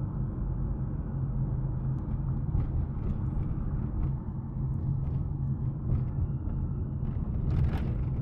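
Steady low rumble of engine and road noise heard from inside a moving vehicle's cabin, with a few faint knocks.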